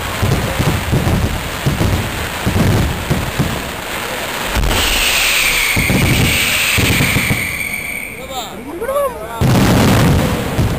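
Aerial firework shells bursting in rapid succession, then a long high whistle that falls slightly in pitch for about three seconds. A few short rising and falling whistles come near the end, followed by another loud burst.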